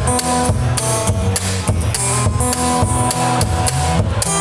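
Live instrumental music: an acoustic guitar playing over a steady percussive beat.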